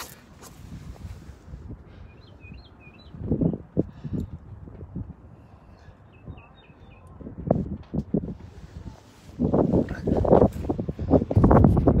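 Small birds chirping faintly, two short runs of calls a few seconds apart. Several low rumbling bursts of noise on the microphone, loudest near the end.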